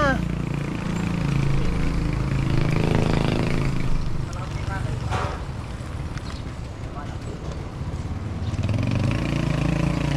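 Road noise while cycling: wind on the action camera's microphone and the low drone of motor-vehicle engines on the road, stronger in the first few seconds and again near the end.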